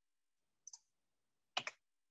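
Two short clicks at a computer, a faint one and then a louder one about a second later, made while working in the design software; otherwise near silence.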